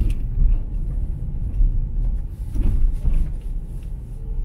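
Low, steady rumble of a car's engine and tyres heard from inside the cabin while driving slowly over cracked, patched pavement, with a couple of faint knocks from bumps in the road.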